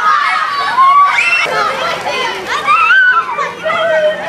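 A crowd of children shouting and squealing at play, many high voices overlapping, with loud shrieks about a second in and again around three seconds in.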